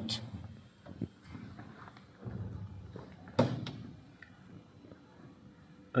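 A few faint knocks and clicks from handling, the sharpest about three and a half seconds in, over low room noise.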